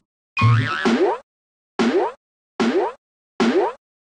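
A cartoon-style sound effect, a short quick upward-sweeping 'boing' that repeats about five times, with dead silence between.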